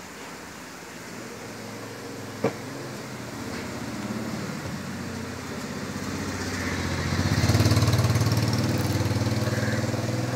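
An engine running steadily, growing louder from about four seconds in and loudest past the middle. A single sharp click comes about two and a half seconds in.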